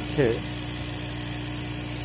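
A 20 W diode laser engraver with air assist running on painted glass: a steady hum with a constant low whine.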